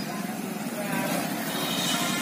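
A motorcycle engine running as the bike comes up the street, growing slightly louder, over general street noise.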